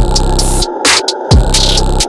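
Hard trap instrumental beat: a heavily distorted 808 bass whose hits drop in pitch, under sharp snare or clap strikes and hi-hats.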